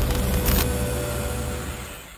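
Outro music sting with a deep bass and a short glitchy noise burst about half a second in, fading out near the end.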